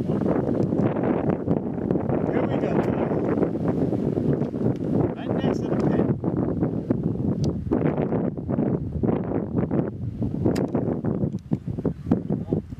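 Wind blowing across the microphone, a rumbling noise that rises and falls and eases off near the end.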